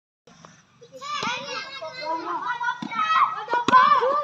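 After about a second of near quiet, several boys' voices call and shout over one another during an outdoor volleyball game. A sharp smack near the end fits a hand hitting the volleyball.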